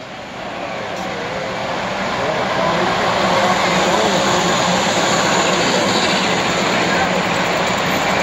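Large-scale model diesel locomotive and its autorack cars rolling past on the track, the wheel-on-rail rumble growing louder as the train comes close, over the steady murmur of a crowded exhibition hall.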